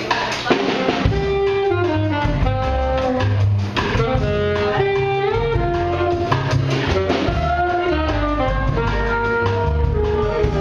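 Small jazz group playing live: a trumpet plays a melody of held and moving notes over plucked upright bass and a drum kit with cymbals.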